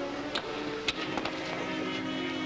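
Background dramatic score with held sustained notes, cut by a few sharp knocks about a third of a second and about a second in.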